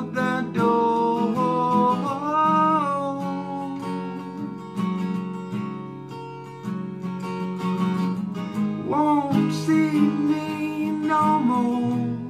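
Acoustic guitar strummed steadily, with a man's voice singing long held notes near the start and again about nine seconds in.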